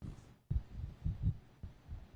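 A run of deep, low bass thumps like a slow heartbeat, a sound effect opening a produced highlights soundtrack.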